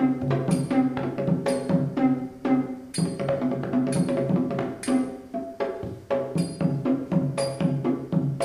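Recorded Sinhalese drumming played back over the room's speakers: a steady, quick run of drum strokes over a low ringing tone, a three-stroke (tun-tita) pattern.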